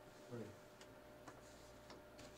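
Near silence: room tone, with a brief low voice sound about half a second in and a few faint clicks after it.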